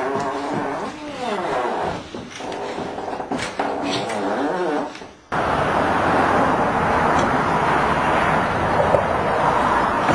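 A trumpet blown loudly in wavering, sliding, buzzy notes, which cuts off suddenly about five seconds in. A steady outdoor noise follows.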